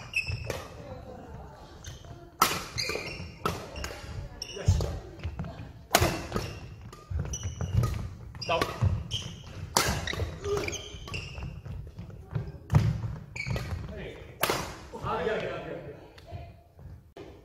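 Badminton rally: rackets striking a shuttlecock roughly once a second, a dozen or so sharp hits, echoing in a large sports hall.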